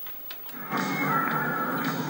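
Film soundtrack music played back from a VHS tape, heard through a CRT television's speaker. It comes in about half a second in after a near-quiet moment and carries on steadily with a wavering melody line.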